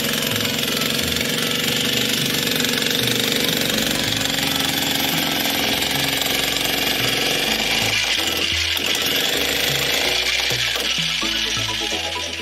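Handheld electric breaker hammer chiselling into a coal face, running steadily and continuously, with background electronic music underneath.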